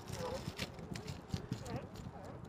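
A few light, hollow knocks and scuffs on a hard plastic cooler as a Dungeness crab is handled inside it.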